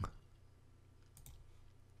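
A couple of faint computer mouse clicks a little over a second in, over a faint steady low hum.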